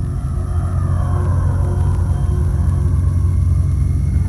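A loud, steady deep rumble with a faint held eerie tone above it: the ominous sound-effects bed of an archive public information film.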